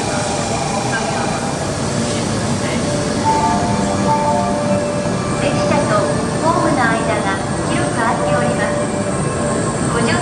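N700-series 4000 Shinkansen trainset rolling slowly alongside the platform as it draws in to stop. A steady running rumble with faint humming tones, and voices in the second half.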